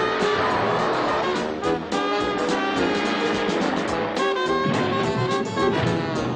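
Upbeat, brassy film-score music with a jazzy swing feel, playing at a steady level.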